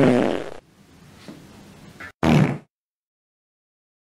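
A fart, one short burst of about half a second, a little over two seconds in, just after the last sung note fades.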